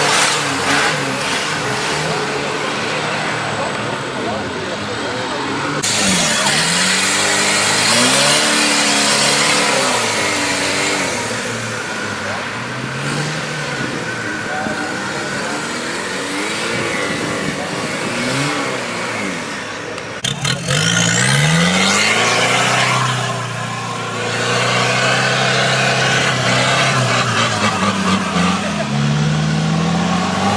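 Off-road 4x4 engines revving hard in a mud pit, the revs rising and falling again and again as the vehicles claw through mud and climb the banks, over a broad rushing noise.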